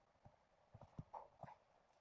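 Faint, scattered clicks and taps over near silence, from hands working a small brush at the eyebrow while dye is applied.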